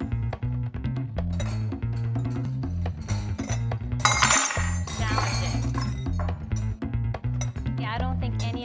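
Background music with a steady bass line, over short clinks of drinking glasses and metal table knives being picked up and set down on wooden tables, with a louder bright clatter about four seconds in.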